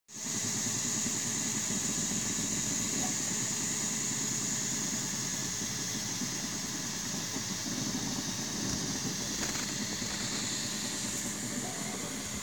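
Ultimaker 2 3D printer running a print: a steady high whir from the print head's cooling fans over the shifting hum of the stepper motors moving the head.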